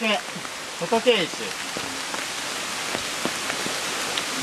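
Steady hiss of a small mountain stream running.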